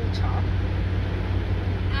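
Motorhome engine and road noise heard inside the cab while driving at speed: a steady low drone.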